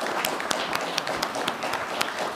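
Applause: many hands clapping at an uneven rate, holding a steady level.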